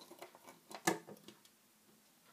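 A few small clicks and taps of a rubber band and fingers on a plastic Rainbow Loom's pegs, the sharpest just under a second in.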